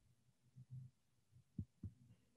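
Near silence: faint low room hum with a pair of soft low thumps a quarter-second apart, about one and a half seconds in.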